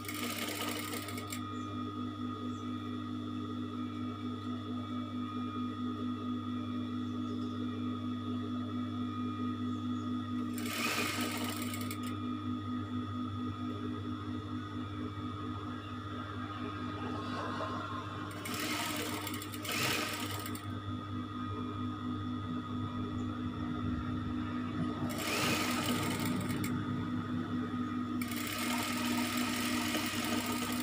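Industrial flatbed sewing machine running as fabric is stitched: a steady motor hum with a fast stitching rhythm, broken by several louder bursts of a second or two.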